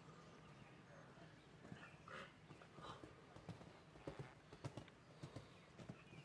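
Faint hoofbeats of a horse cantering on sandy arena footing: an irregular run of soft thuds that becomes distinct about two seconds in.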